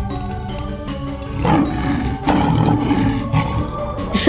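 A lion roar sound effect, starting about one and a half seconds in and lasting over a second, over steady background music.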